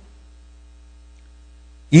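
Steady low electrical hum, like mains hum in a sound system, with faint steady overtones and no other sound. A man's voice cuts in at the very end.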